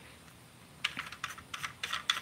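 Small sharp clicks and taps, a quick irregular run starting about a second in, as a baitcasting reel is handled and fitted onto a rod's reel seat.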